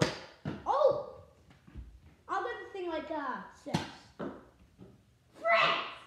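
Nerf foam-dart blasters firing: short sharp snaps, the loudest about three and a half seconds in, among children's excited shouts.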